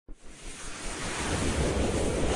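Whooshing rush sound effect of an animated logo intro, a wind-like noise with a low rumble that swells in loudness over about two seconds.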